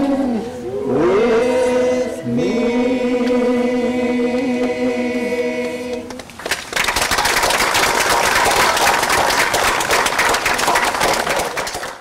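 Singing that holds long, sustained notes, sliding up into several of them. About halfway through, the singing gives way to applause, which fades out at the end.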